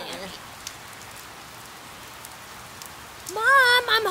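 Steady rain falling, with faint scattered drop ticks. About three seconds in, a loud pitched sound that wavers up and down cuts in over the rain.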